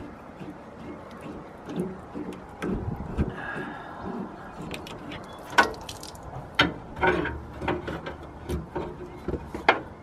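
Hands working a fuel line fitting loose from an inline fuel filter: irregular clicks and knocks of the fitting and hose, the sharpest a little past halfway and just before the end.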